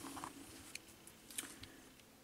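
Faint, scattered clicks and light taps, about three in two seconds, from hands handling a lithium-ion battery charger as an 18350 cell is taken out.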